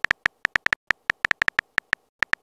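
Phone keyboard typing sound effect from a texting-story app: short, sharp clicks, one per letter as the message is typed, in a quick uneven run of about eight a second.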